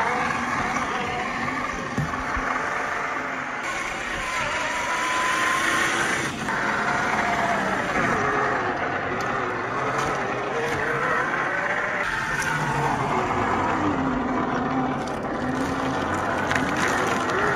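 Electric motor and gearbox of a Traxxas TRX-4 RC crawler whining, its pitch rising and falling with the throttle, over a steady hiss of the tyres on wet ice and rock.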